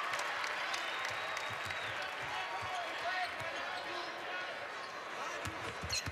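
A basketball being dribbled on a hardwood court, repeated low bounces over the steady murmur of an arena crowd.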